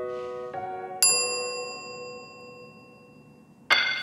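Background score: soft sustained keyboard chords. A bright bell-like ding sounds about a second in and fades slowly. Near the end a sudden, livelier tune with a strong bass line cuts in.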